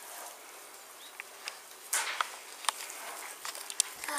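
Hands squishing and kneading raw beef-mince meatball mixture in a bowl: soft, irregular squelches and small clicks, the strongest about two seconds in.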